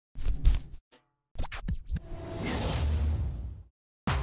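Commercial soundtrack music with record-scratch effects: two quick clusters of short scratches, then a noisy whoosh that swells for about a second and a half and cuts off just before the end.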